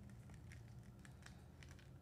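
Near silence: faint, scattered light ticks of fingertips pressing heat-transfer vinyl onto a textured glass cutting board, over a low steady hum.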